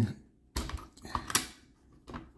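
A quick run of light clicks and taps as a side-mount optic rail is handled and seated on an airsoft AK's receiver, hard parts knocking together. The clicks start about half a second in and die away before the end.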